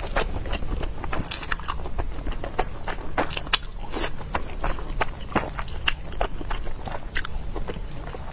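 Close-miked mouth sounds of a person chewing a mouthful of sauce-coated food: a steady run of irregular short clicks and smacks.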